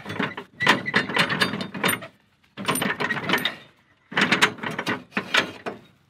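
Square steel tubing being worked by hand into a square steel receiver sleeve: rapid metal-on-metal scraping and clattering in three bursts, with short pauses about two and four seconds in.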